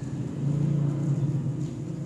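A low rumble that swells about half a second in and fades before the end.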